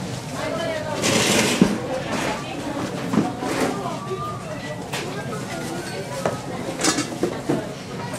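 A serving spoon scraping and stirring cooked rice in a large aluminium pot, with a few sharp clicks of the spoon against the pot. Voices chatter in the background.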